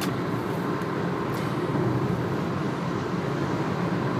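Steady low rumble of a car heard from inside its cabin while driving, road and engine noise.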